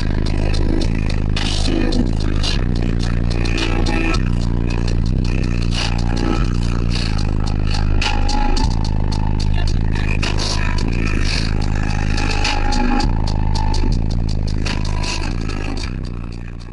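Bass-heavy music played at very high volume on a competition car-audio system, heard inside the car, with deep sustained bass notes.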